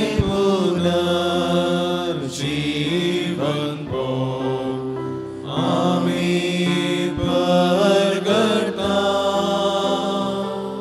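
A slow devotional hymn: one voice singing long, gliding notes over held chords.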